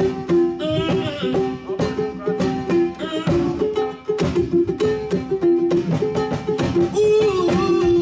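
Solo kologo, the Frafra two-string calabash lute, plucked in a quick melody of short notes that step up and down.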